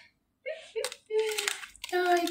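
A woman's voice making short sounds without clear words, with one sharp click just under a second in.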